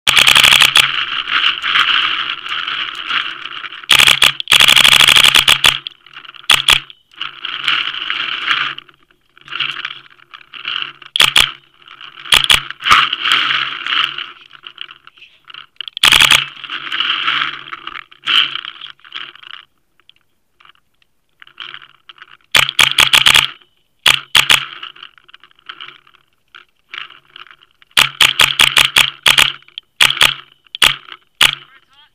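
Paintball marker firing: sharp pops, singly and in quick strings of several shots a second, the longest volleys about four seconds in and near the end. A rasping noise comes and goes between the volleys.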